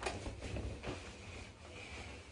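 Rustling of a denim jacket being pulled on and settled over the shoulders, with a few soft handling knocks in the first second, over a steady low room hum.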